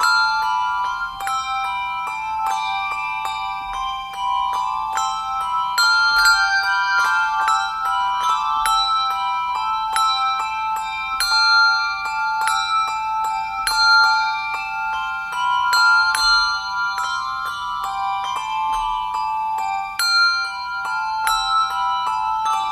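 A handbell choir of four ringers playing a Christmas hymn tune: bright struck bell tones in a steady rhythm, several bells sounding together and ringing on between strikes.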